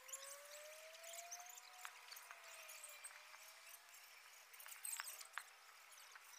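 Near silence: faint football-pitch ambience with no crowd, with slow faint gliding tones and a few faint sharp knocks, the clearest two about five seconds in.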